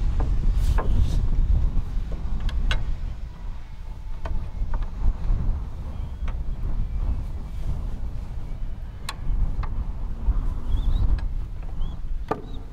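Wind rumbling and buffeting on the microphone, with a few short sharp knocks and clicks of wooden slats and tools being handled.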